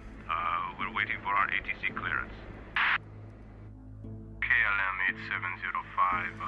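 Thin, radio-like voices talking in two short stretches over a steady low musical drone and hum. There is a brief hiss burst about three seconds in.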